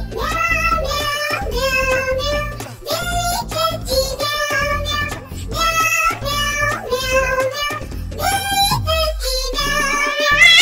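A Hindi children's nursery rhyme sung by a child-like voice over backing music, in short sung phrases.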